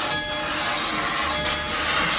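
Denver & Rio Grande Western No. 340, a C-19 class 2-8-0 steam locomotive, venting steam low at its front in a loud, steady hiss.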